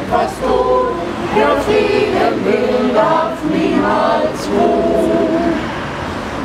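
A group of voices singing a German peace song together in long held notes.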